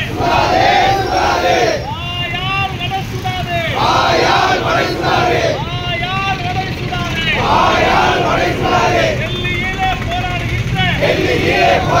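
Protesters shouting slogans in call and response: a single voice shouts a line and the crowd shouts it back together, trading turns about every two seconds.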